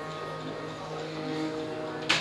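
Quiet, steady held notes of the kirtan's instrumental accompaniment, sounding alone in a pause between sung lines.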